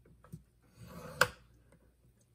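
Scoring stylus drawn along a groove of a scoring board through black cardstock: a faint scrape about a second in that ends in one sharp click, with a light tick before it.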